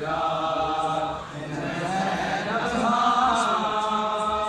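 A noha, a Shia mourning lament, chanted by men's voices in long held lines with a short break about a second in. Under it runs a faint, regular low beat of chest-beating matam.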